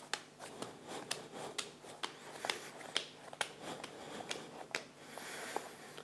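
Hands kneading a lump of throwing clay on a wooden board and rounding it into a cone: quiet, irregular soft pats and rubbing, about two or three a second.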